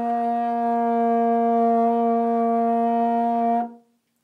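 Trombone holding one long, steady note to finish a tune, stopping abruptly a little before the end.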